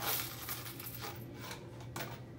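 Copper-coated pennies jingling and clinking as they are handled, with a burst of clinks at the start and a few single clicks later.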